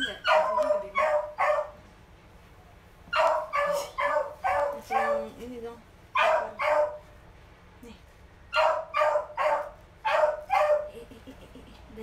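Small dog yapping in four quick runs of sharp barks, about three barks a second, with short pauses between the runs.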